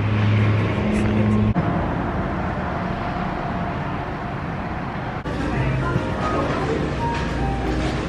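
Street traffic: a vehicle engine's steady low hum, which cuts off after about a second and a half, then an even wash of road noise. About five seconds in this changes to the indoor background of a fast-food restaurant, with faint music.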